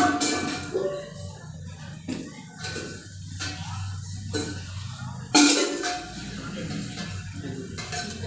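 Metal vessels and a steel bucket being handled, clanking and clinking about six times with short ringing, the loudest clank about five and a half seconds in, over a steady low hum.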